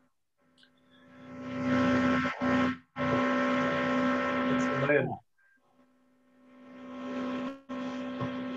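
Steady electrical hum or buzz picked up by an open microphone on a video call: stray noise from an unidentified participant. It fades in over about two seconds, drops out briefly a few times, and comes back each time.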